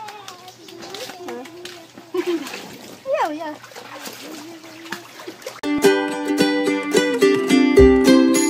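Children's voices and hands splashing water in a small inflatable pool, then background music of plucked strings starts suddenly and loudly a little past halfway.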